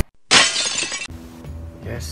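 A shattering-glass sound effect: a single noisy crash about a third of a second in that fades within a second, right after electronic intro music cuts off. Then a quiet room with a low steady hum.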